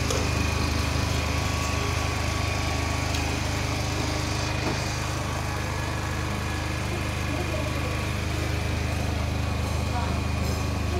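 Portable petrol generator running steadily, a constant engine hum with no change in speed.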